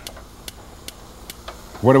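Gas stove burner's igniter clicking as the burner is lit, three sharp clicks evenly spaced a little under half a second apart.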